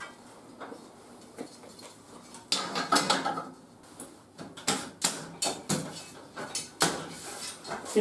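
Light metallic clicks and knocks of an aluminum sheet shelf being handled and set down onto a welding rack, a scattered series of short clanks that comes thicker in the second half.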